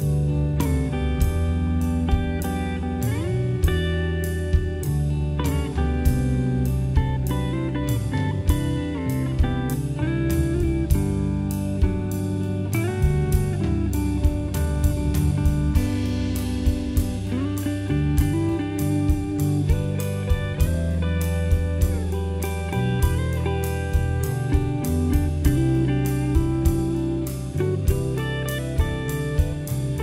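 Telecaster-style electric guitar playing a lead over a looped rhythm part, weaving lines in thirds and sixths and ringing natural harmonics, with a steady beat and deep bass notes underneath.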